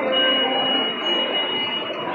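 Busy supermarket background noise, with a steady high-pitched tone that holds for almost two seconds.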